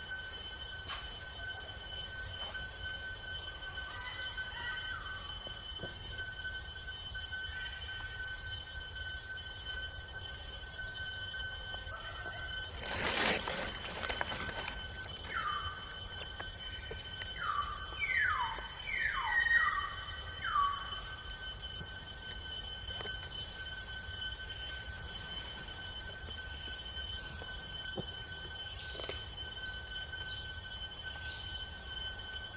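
Forest ambience with a steady high insect drone. About halfway through there is a short loud noisy burst, followed by a run of about six short squeaky calls that each drop in pitch.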